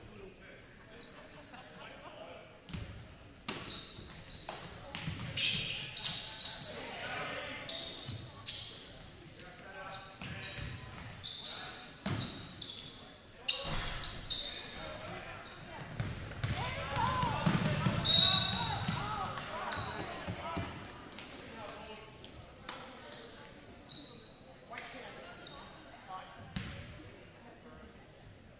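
Basketball game play in a gym: a ball dribbling on the hardwood court, sneakers squeaking, and players and spectators calling out. The voices and a sharp squeak peak about two-thirds of the way through.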